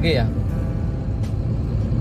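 Steady drone of a moving truck's engine and road noise, heard from inside the cab while driving on a highway.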